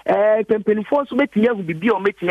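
A man speaking continuously over a telephone line, the narrow, thin sound of a phoned-in news report.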